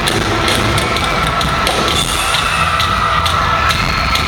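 Live band music with repeated drum hits, recorded from the audience in a large arena.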